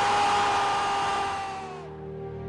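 A football commentator holding one long, high shout over a roaring stadium crowd, celebrating a long-range shot; both cut off suddenly near the end.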